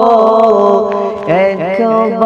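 Male voices singing a Bangla Islamic gojol in long held notes with no instruments, in a drone-like vocal backing. A new phrase with sliding pitches starts about a second and a half in.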